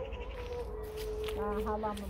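Sheep bleating: one quavering bleat in the second half, over a faint steady tone.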